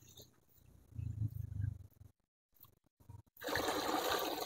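Water gushing in a strong flow from a bilge pump's garden hose into a plastic bucket, starting near the end. A low, dull rumble comes about a second in.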